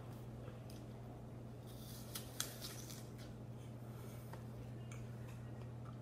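Crunch of a bite into a raw apple about two seconds in: a short run of crisp cracking with one sharp snap, followed by a few faint crunching clicks of chewing. A steady low hum sits underneath.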